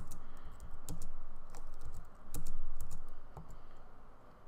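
Computer keyboard keys being pressed: a string of about a dozen irregular, separate clicks, with a low muffled bump a little past the middle.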